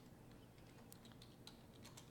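Near silence: room tone with a few faint, scattered clicks from computer keys.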